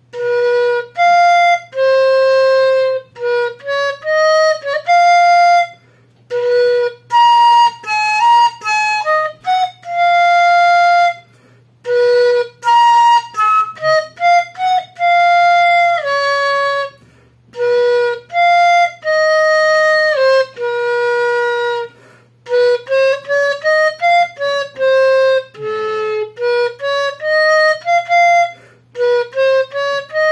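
Dizi (Chinese bamboo flute) playing a slow solo melody: single sustained notes and quicker runs in phrases, with short breath pauses between phrases and a few notes that slide down in pitch.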